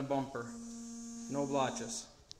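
A steady electrical hum, one held tone with overtones, with brief low fragments of a man's voice over it.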